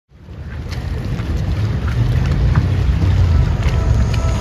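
Low rumble and wind noise on the microphone, fading in over the first two seconds, with a few faint ticks.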